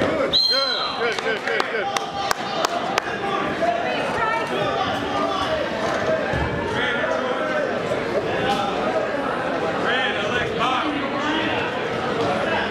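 Echoing gymnasium din of many overlapping voices talking and calling out at a wrestling meet, with a brief high-pitched tone about half a second in and a few sharp knocks or slaps around two to three seconds in.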